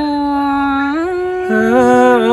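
Two singers' voices holding long, drawn-out notes in traditional Thái folk singing. One voice sustains a note that steps up in pitch about a second in, and a lower voice joins and overlaps it about halfway through.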